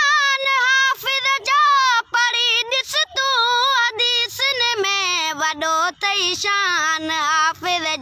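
A boy singing a Sindhi devotional song solo, holding long, wavering notes.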